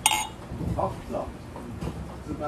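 A glass bottle of beer clinks against the rim of a stemmed drinking glass right at the start. Beer then pours from the bottle into the tilted glass.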